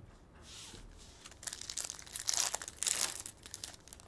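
Foil trading-card pack wrapper being torn open and crinkled by hand, in a run of crackly bursts starting about a second and a half in and loudest near the end.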